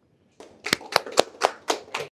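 Hand clapping: about six sharp, even claps, roughly four a second, starting a little over half a second in.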